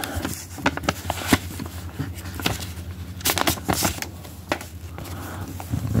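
A paper envelope being opened and a greeting card slid out by cotton-gloved hands: irregular rustles and crinkles of paper, loudest a little past the middle, over a steady low hum.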